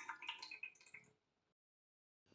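Oil poured from a small plastic cup into a bread machine's pan: a short liquid pour that dies away about a second in.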